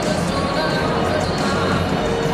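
Stadium ambience in the stands: voices nearby and music over the public-address system, with some dull thumps.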